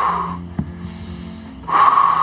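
A man's deep, forced breaths, two long breaths about two seconds apart, over a steady low hum. This is the laboured breathing of an exhausted ultracyclist struggling for oxygen at altitude.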